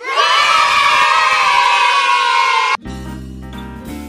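A crowd of children cheering, loud and lasting nearly three seconds before cutting off suddenly. Quieter instrumental background music with steady held notes follows.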